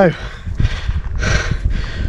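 A man breathing hard, out of breath after climbing to a summit, with two heavy breaths. Wind rumbles on the microphone underneath.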